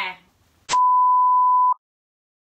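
A single steady electronic beep, about a second long, with a click at its onset. It is the test tone that goes with a colour-bar 'technical difficulties' card. It cuts off suddenly into dead silence.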